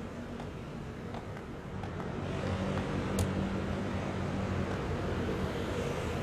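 Steady city street traffic noise that grows louder about two seconds in, with a few light clicks.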